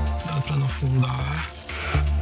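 Background music with a deep, pulsing bass line.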